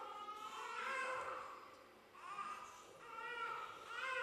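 A small child babbling and calling out in a high voice, in several short phrases.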